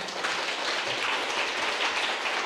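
Audience applause, swelling in the first moment and then holding steady.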